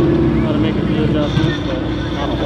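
A car engine running steadily at idle, with faint voices talking in the background.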